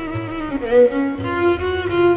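Violin playing a slow devotional melody, bowed notes linked by slides and wavering vibrato.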